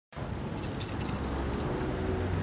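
Street traffic, a car passing with a low rumble, and a light metallic jingle like keys from about half a second in, lasting about a second.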